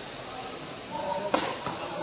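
A sepak takraw ball being kicked: one sharp smack a little past the middle, over low crowd murmur.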